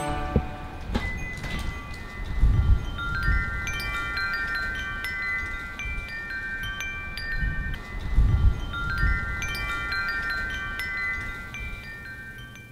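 Wind chimes ringing irregularly, many overlapping metallic tones that fade slowly. Low wind rumble on the microphone swells twice, about two and a half seconds in and again about eight seconds in.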